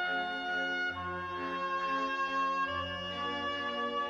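Melodic trance music in a drumless passage: sustained brass-like chords that change every second or two, over a low bass note that enters about a second in.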